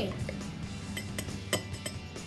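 Metal spoon stirring coffee and water in a drinking glass, clinking sharply against the glass several times in quick succession from about a second in.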